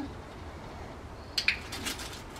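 A dog's claws and paws clicking and scuffing on a concrete patio as it breaks into a sprint, a short cluster of sharp clicks starting about a second and a half in after a quiet stretch.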